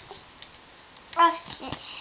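A toddler's short voiced sound, a brief high-pitched cry or syllable, about a second in, followed by a few short breathy, sniffy noises.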